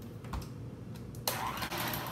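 Electric hand mixer running steadily, its beaters working softened cream cheese and sugar in a plastic bowl. A couple of ticks in the first second, and the whirring grows fuller and louder a little over a second in.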